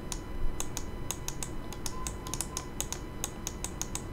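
Quick, irregular run of light clicks, about six a second, from hands working a computer's input devices.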